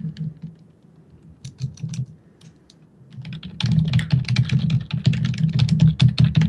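Typing on a computer keyboard: a few scattered keystrokes at first, then fast continuous typing from a little past halfway.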